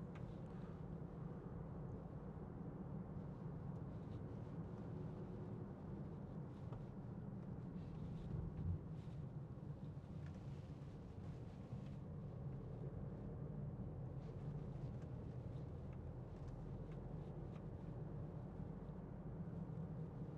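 Quiet, steady low rumble of engine and road noise inside the cabin of a 2015 Range Rover Evoque 2.0 TD4 on the move, with one faint knock about nine seconds in.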